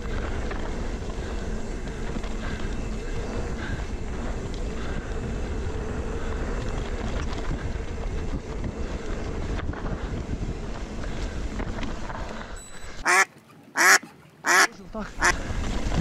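Steady rush of wind on the camera microphone and knobby mountain-bike tyres running fast over dirt singletrack. About thirteen seconds in, the rider lets out several loud, short shouts, swearing at an obstacle on the trail that angered him.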